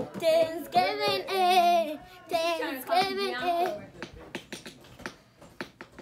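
A girl singing in long, wavering notes, in three or four phrases, for about the first four seconds. After that come a few short, scratchy strokes of a hairbrush through her hair.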